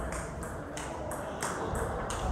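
Table tennis rally: the celluloid/plastic ball clicking off the rubber-faced paddles and the table in a quick series of sharp ticks, about three a second.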